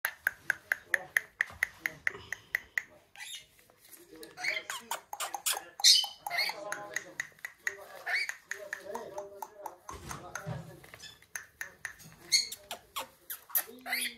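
A young rainbow lorikeet calls in a quick, even run of short chirps, about six a second, for the first few seconds. It then chatters in an irregular, voice-like mix of squeaks and squawks.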